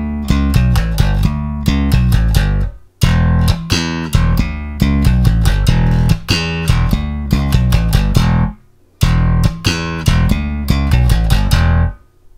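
Electric bass guitar, a Jazz Bass, played slap-style: thumb slaps on the open E and fretted notes with finger pops between, in a swung line with triplet fills. The phrase is played three times over, with short breaks about 3 seconds and about 8.5 seconds in.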